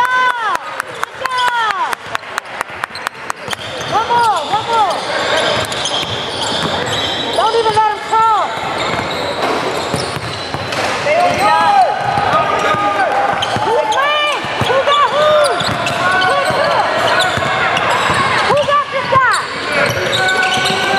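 Basketball shoes squeaking on a hardwood court again and again throughout. In the first few seconds a basketball is bounced quickly on the floor, and players' voices carry through the gym.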